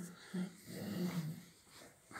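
A person's low, hummed groans under a bonesetter's pressure on the lower back: a short one, then a longer one about half a second in.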